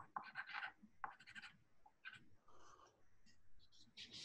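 Faint hand-writing on paper: short scratchy strokes in a few quick clusters, heaviest in the first second and a half.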